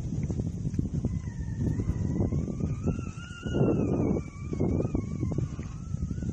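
Wind gusting and buffeting the microphone. From about a second in, a faint wavering tone rises and then falls for some four seconds.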